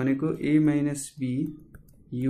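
A man's voice speaking, then pausing for a moment near the end.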